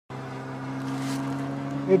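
Engines of a large radio-controlled four-engine model airplane running steadily in flight overhead, a constant-pitch hum.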